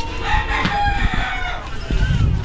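A rooster crowing once: a long call that holds its pitch and falls away about a second and a half in.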